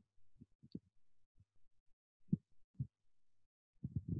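Soft, low thumps at irregular intervals, about half a dozen in four seconds, the two clearest a little past the middle, over a faint steady hum.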